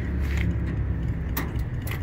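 Sharp metal clicks and a light rattle from the steel shelf of a truck service-body compartment being handled, the clearest about halfway through, over a steady low rumble.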